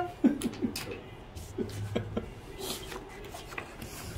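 Playing cards being dealt from a dealing shoe onto a felt blackjack table: a scattering of soft clicks and taps, with a few brief murmured voices over a low steady hum.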